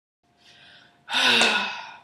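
A person's breath: a soft breath, then about a second in a loud, sharp gasp with a little voice in it that fades away.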